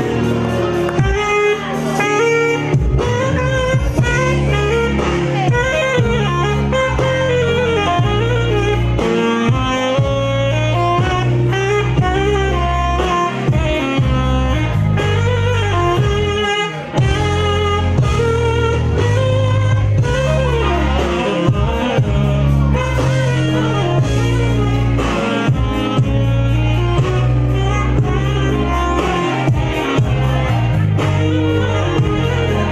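Saxophone played live, a melodic line with gliding, bending notes, over backing music with a heavy, steady bass.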